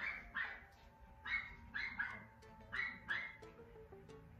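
A dog barking in the background: a string of short barks, about two a second, with faint music underneath.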